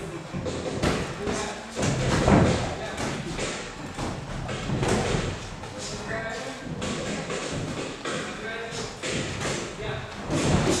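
Boxing sparring: irregular thuds of gloved punches and footwork on the ring canvas, the loudest about two seconds in.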